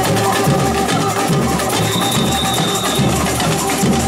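A samba bateria (drum section) playing live: a dense mix of drums and percussion over a deep drum beat that pulses about twice a second.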